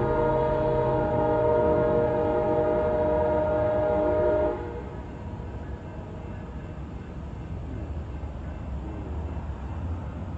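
Passenger train horn held on one long multi-note chord, cutting off suddenly about four and a half seconds in. The rumble of the departing diesel train then carries on more quietly.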